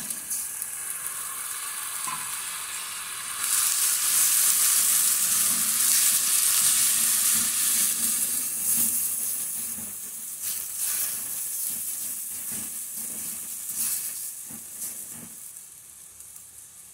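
Chopped tomatoes and onion sizzling in olive oil in a stainless steel pot. The sizzle swells about three seconds in and slowly dies down toward the end, with a silicone spatula stirring through it.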